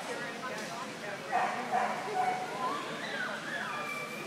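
A dog giving several short, high calls that slide up and down in pitch, starting about a second in, over background chatter.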